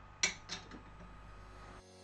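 Two sharp metallic clinks about a third of a second apart, then a fainter one, from an allen key and steel hex bolts on the steel base plate of a monitor stand as the bolts are done up. Under them is a low steady room hum.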